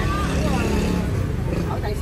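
Steady low rumble of street traffic under people talking.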